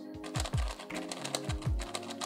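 Rapid light clicking of an X-Man Galaxy V2 magnetic megaminx as its plastic faces are turned by hand, over background music with a steady bass beat.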